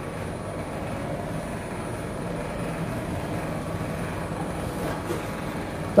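A steady rushing hum, even throughout with no distinct knocks or clicks.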